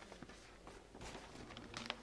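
Faint rustling of large flip-chart paper sheets being handled and lifted over the board, with a short sharper crinkle near the end.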